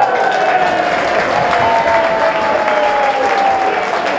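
Football crowd suddenly breaking into applause and cheering as a shot is dealt with at the goal, with long held shouts over the clapping.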